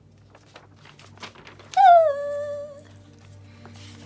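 A woman's high-pitched vocal squeal, its pitch dropping a little and then held for about a second, after faint rustling of paper.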